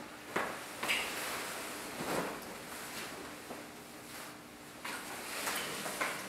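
Quiet rustling of clothing with a few soft knocks as a suit jacket is taken off.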